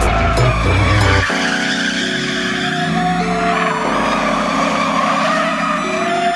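A Ford Mustang's rear tyres squealing as it spins donuts, a steady wavering screech, mixed with background music whose deep bass notes drop away about a second in.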